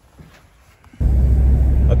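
Steady low rumble of road and engine noise inside a car's cabin, coming in abruptly about a second in after a faint, quiet first second.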